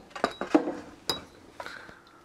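Handling noise from a camera being moved and repositioned: a few sharp clicks and light clatter of its mount.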